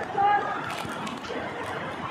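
People's voices calling and chattering over the steady rush of river water, with one short, loud, high call about a quarter second in.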